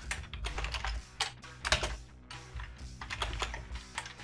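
Typing on a computer keyboard: an uneven run of keystrokes as a line of code is entered, with soft background music under it.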